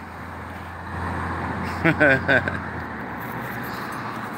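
Road traffic on a busy street, a steady low hum and rush that fades after about three seconds, with a short bit of voice about two seconds in.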